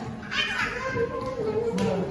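Young children's voices talking and calling out over one another.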